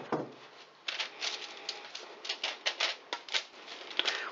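Hands spreading thin, oil-coated raw potato slices across a baking tray lined with baking paper: irregular quick rustles of the paper and light taps of the slices, starting about a second in.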